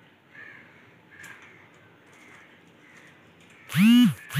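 A crow cawing loudly once near the end: a single hoarse call that rises and then falls in pitch, over a faint quiet background.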